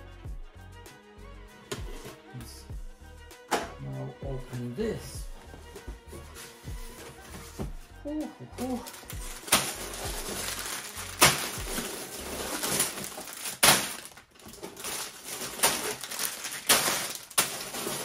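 Background music, then from about halfway through the crinkling and rustling of plastic Lego parts bags being handled and dropped onto a pile, with many sharp crackles.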